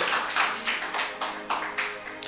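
A few scattered hand claps, getting fainter, over faint sustained background music.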